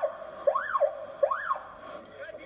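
A siren sweeping up and then down in pitch, three quick rise-and-fall sweeps of under a second each.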